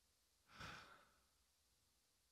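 A man's single short breath, close to a headset microphone, about half a second in; otherwise near silence.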